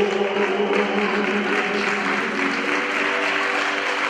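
Audience applauding after a gospel song ends, with a few steady tones of the closing music still held faintly underneath.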